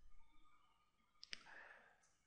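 Near silence, with two faint sharp clicks in quick succession about a second in.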